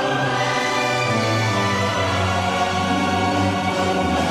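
A choir singing a North Korean song to Kim Il Sung, with orchestral accompaniment, in long held chords.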